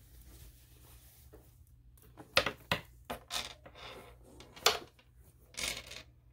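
A leather crossbody bag with a metal chain strap being handled. Several sharp metallic clinks come between about two and five seconds in, and a longer rustle comes near the end.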